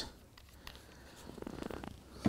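Faint handling noises from a small plastic dropper bottle of acrylic paint: a light click about two-thirds of a second in, then soft scratchy rustling in the second half.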